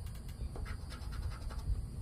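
Poker chip scraping the latex coating off a scratch-off lottery ticket: a quick run of short, irregular scratching strokes.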